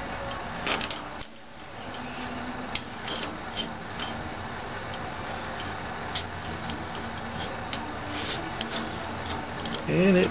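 Scattered light metallic clicks and ticks of a lock nut being spun by hand down the threaded shaft of a motorcycle front shock absorber, over a steady low hum. The nut screws on freely.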